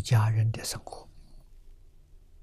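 An elderly man speaking Mandarin for about the first second, then a pause with only a faint low hum.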